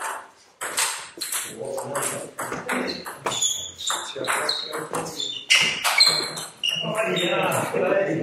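Table tennis rally: the ball clicks off the bats and the table in quick alternation, with the sharpest hits about five and a half to six seconds in.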